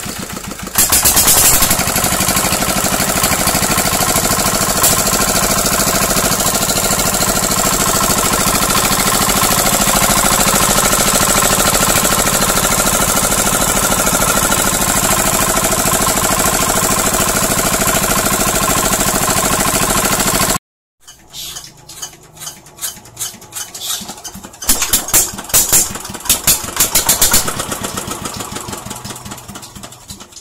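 Freshly serviced single-cylinder horizontal diesel engine running steadily and loudly at a constant speed; the sound cuts off abruptly about two-thirds of the way through. Afterwards come quieter, irregular metallic knocks and clatters, with a run of louder ones near the end.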